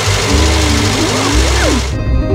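Cartoon limousine driving along with a steady engine and road sound, with music playing underneath; the driving sound stops abruptly at the end.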